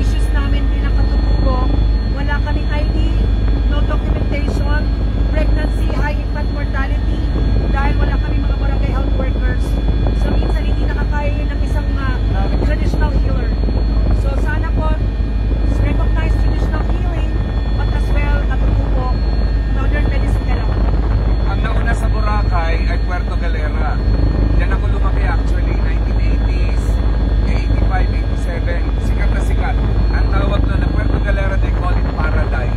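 Helicopter engine and rotor noise heard inside the cabin in flight: a loud, steady low drone with steady whining tones above it.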